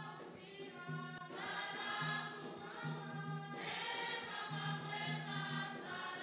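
Choir singing a hymn to Our Lady in Swahili, with new phrases coming in about a second and a half in and again past the middle. A steady high rattle keeps time underneath, about three strokes a second.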